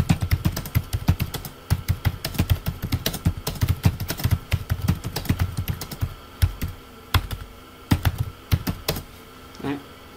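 Typing on a computer keyboard: a fast, dense run of key clicks for about six seconds, then a few scattered keystrokes.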